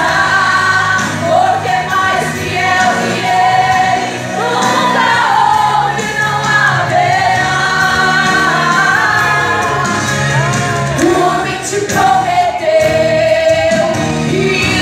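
Two women singing a Portuguese gospel song as a duet into microphones, with a live band accompanying them including electric guitar.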